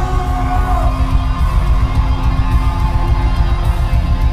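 Rock band playing live and loud, with electric guitar over a dense, pulsing low end.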